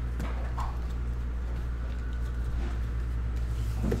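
Faint soft taps and slides of hockey trading cards being shuffled in the hand and laid down on a cloth table mat, over a steady low hum.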